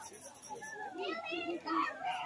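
Several people's voices talking and calling out over one another, with no music playing.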